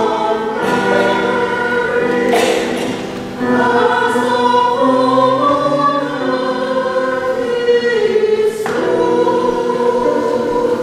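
Church choir singing in harmony, holding long chords, with brief breaths or sung consonants between phrases.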